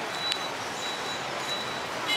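Steady outdoor street noise, a low even wash of passing traffic, with a faint thin high tone that comes and goes.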